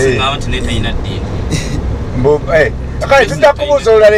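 Talking in a local language over the steady low rumble of a moving minibus taxi, heard inside its cabin.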